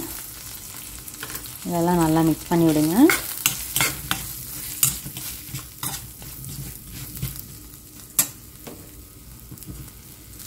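Shallots, garlic and green chillies frying in oil in a steel kadai, stirred with a slotted steel spatula: a steady faint sizzle with many sharp clicks and scrapes of the spatula on the pan, one louder knock near the end. A brief voice-like sound about two seconds in is the loudest part.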